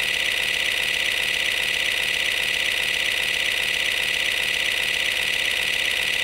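A steady whirring hiss, strongest in the upper range with a fine fast flutter, held at one level throughout: an added sound effect rather than a live recording.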